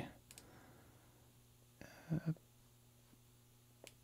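Two faint computer mouse clicks, one just after the start and one near the end, over a low steady hum of room tone.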